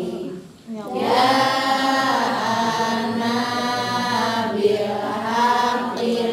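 Several voices chanting together in long, drawn-out melodic phrases, with a brief break about half a second in.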